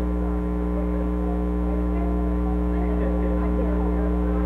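Loud, steady electrical mains hum on the audio feed, with faint crowd chatter beneath it.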